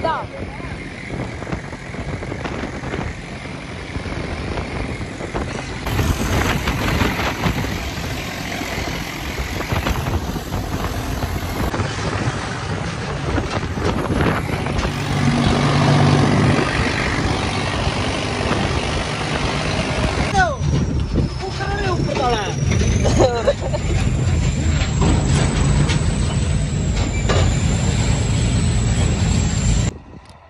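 Tractor engine running steadily while driving on the road, mixed with heavy wind rush on the microphone. It grows louder partway through, and a thin high whine rises in pitch in the last third.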